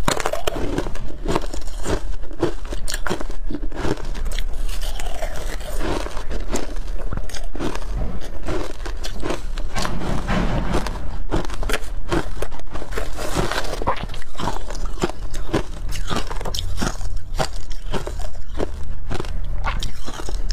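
Close-miked biting and chewing of frozen ice coated in matcha and milk powder: a dense run of crisp, irregular crunches.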